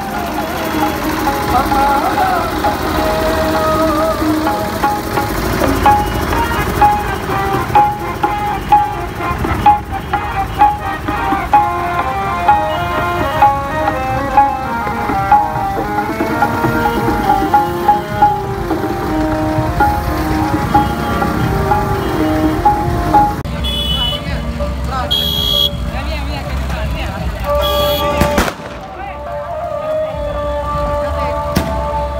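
Devotional music with singing, with a regular beat. A few short high tones come in over it in the last few seconds.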